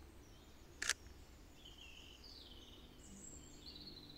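A Sony A7R III camera's shutter firing once: a single short click about a second in. Faint birdsong chirps through the quiet woodland after it.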